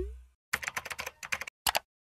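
End-card sound effects: a low whoosh fading out with a short rising swoop, then rapid computer-keyboard typing clicks for about a second, and one last double click near the end.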